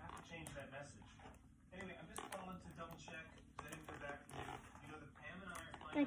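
Faint, indistinct speech too quiet to make out, with a few light clicks from hands working at stiff plastic toy packaging.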